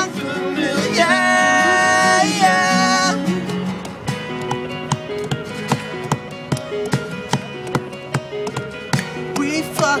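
Live acoustic guitars playing, with a long held sung note about a second in. After it only the guitars go on, in a steady picked pattern, until the singing comes back in near the end.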